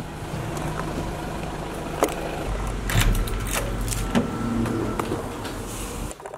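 Street traffic and a low, steady engine rumble as a London black cab's rear door is opened, with sharp knocks about two and three seconds in.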